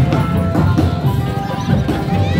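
Loud live music from a street drum band: drums with a pitched melody that holds some notes and glides on others.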